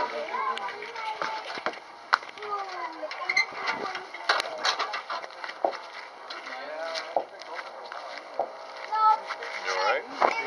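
People talking away from the microphone, their words not clear, with a few short, sharp clicks among the talk.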